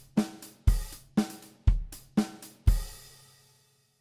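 Sampled acoustic drum kit from a Kontakt drum library playing a simple kick, snare and hi-hat loop at 120 BPM, a deep kick about once a second with a hit between each. The loop stops about three seconds in and the last hit rings out.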